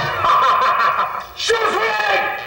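A person's voice speaking a line in drama dialogue, over faint background music.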